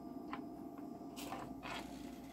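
Faint handling noises as test leads are plugged into a bench multimeter's sense terminals: a light click about a third of a second in, then brief rustling in the second half, over a low hum.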